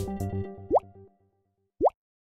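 Two short rising 'plop' pop sound effects, marking taps on on-screen phone buttons, about three-quarters of a second in and again near the end. Light background music fades out during the first second.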